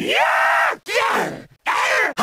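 A young man's voice letting out exasperated, wordless whining groans: one drawn-out sound that rises and then falls in pitch, followed by two shorter ones.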